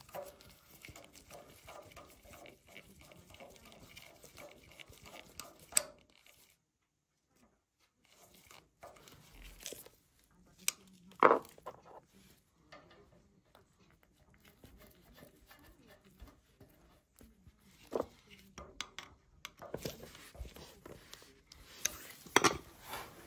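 Small metallic clicks and scrapes of a large flat-blade screwdriver turning the stiff screw of a gas isolation valve on a gas fire's supply pipe, shutting the fire off. A louder sharp clink about eleven seconds in and a few more near the end.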